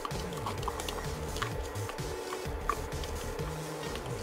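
Background music, with a few light clicks and scrapes of a wooden spoon scraping soaked rice out of a plastic container into a pot of water.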